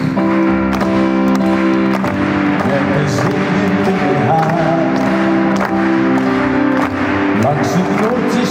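Instrumental backing music of a ballad played through the PA system between sung lines: long sustained chords with a wavering melody line over them.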